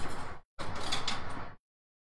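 Two stretches of rough scraping noise, each about a second long with a short gap between, then the sound cuts off abruptly to dead silence.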